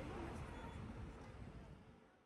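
City street ambience, mostly a low traffic rumble, fading steadily toward silence.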